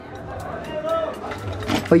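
Speech only: people talking quietly in the background, with a louder voice cutting in near the end.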